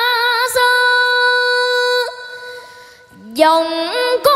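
A boy singing a Vietnamese traditional song with musical accompaniment. He holds a long note that fades away a couple of seconds in, then his voice slides up into a new phrase near the end. A sharp knock falls about half a second in.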